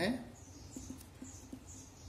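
Pen scratching on paper while writing words by hand: a quick run of short, high scratchy strokes.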